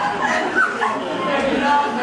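People laughing: a live audience and performers, with voices and short pitched cries of laughter mixed together.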